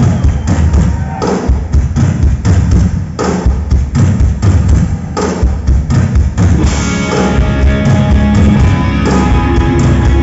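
Hard rock band playing live at the start of a song: drums and electric guitars over heavy bass, with the drum strokes standing out at first and the sound growing fuller about seven seconds in.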